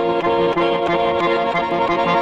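Russian garmon (diatonic button accordion) playing, starting abruptly with held chords and quick runs of notes over them.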